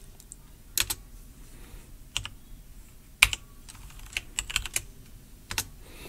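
Computer keyboard being typed on: scattered single keystrokes with pauses between, the loudest about three seconds in, and a short quick run of keys a little past four seconds in.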